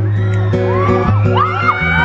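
Acoustic guitar playing an instrumental gap in the live song, with audience members screaming and whooping over it from about half a second in, several high voices rising and falling at once.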